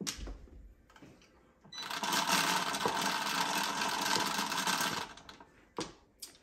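Automatic mahjong table's internal mechanism running: a steady mechanical rattle of tiles and motor that starts about two seconds in, lasts about three seconds and stops suddenly. Single clicks of mahjong tiles being set down come at the start and near the end.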